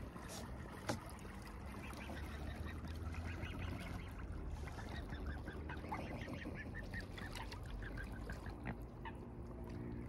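Mute swans feeding in shallow water at the edge of reeds, with a string of short, soft, high calls, several a second, through the middle.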